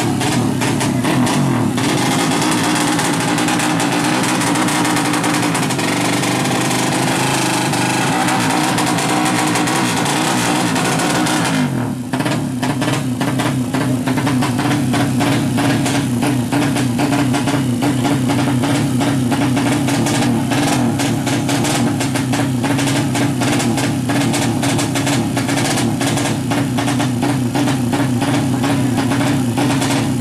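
Modified drag-bike engine running hard at the start line, a steady fast-pulsing racing engine note held at high revs, with a short dip and change in pitch about twelve seconds in.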